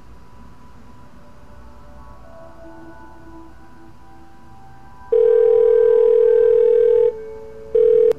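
Telephone ringback tone as a call is placed: a loud steady tone starts about five seconds in, lasts about two seconds, drops away, and sounds again briefly near the end. Soft background music with held notes plays underneath.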